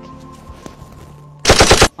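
A short burst of automatic gunfire, about seven rapid shots in under half a second, coming about one and a half seconds in after a quieter stretch.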